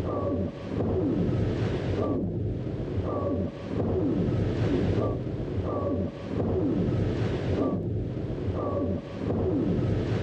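Film sound effect of the pepelats spacecraft flying with its door open: a steady rushing drone with a short high tone and a falling whistle that repeat about once a second, the level dipping briefly every few seconds.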